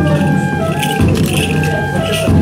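Hana matsuri dance music: a deep taiko drum beat at the start and again about a second in, under a bamboo flute melody of held notes, with the dancer's hand bells jingling.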